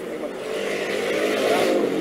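A motor engine running nearby, getting steadily louder with its pitch rising a little.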